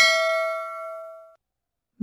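A single bright bell-like ding from a subscribe-button animation's sound effect. It rings at one steady pitch and fades away, dying out about two-thirds of the way in.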